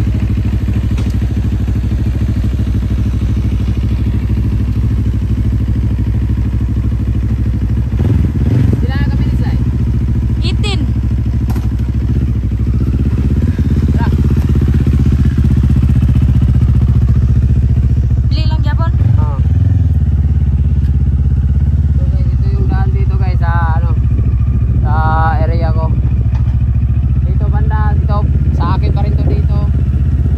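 Motorcycle engine running steadily at low revs as the bike moves off and rides slowly along a road.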